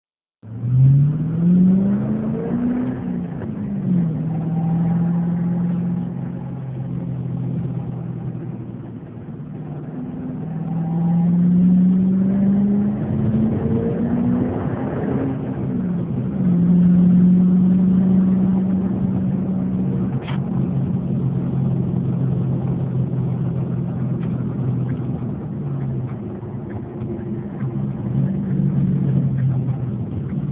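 2010 Ford Mustang GT's 4.6-litre V8 heard from inside the cabin through a phone microphone, accelerating. Twice the revs climb and drop back, then the engine settles into steady running at a lower, even pitch.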